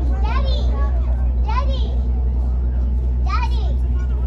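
Steady low drone of the cruise boat's engine, with short high-pitched voices of passengers calling out, rising and falling, about every second and a half.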